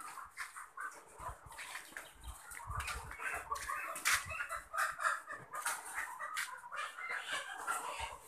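Many caged ready-to-lay hens clucking and calling at once, a continuous overlapping chatter, with a few sharp clicks among the calls.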